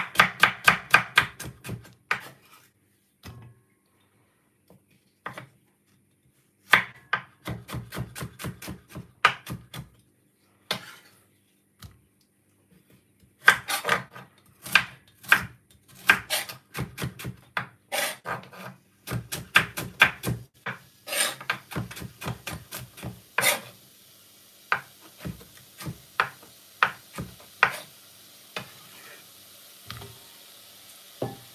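Kitchen knife chopping carrot on a wooden cutting board, in quick runs of about five strokes a second broken by pauses, then slower single cuts near the end. In the second half a steady sizzle rises from the hot pot of oil and aromatics.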